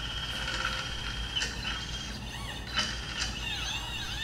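Stepper motors of a small CNC machine driven by a TinyG motion controller, running. Their whine rises and falls in pitch in short arcs as the axes speed up and slow down, with a few sharp clicks along the way.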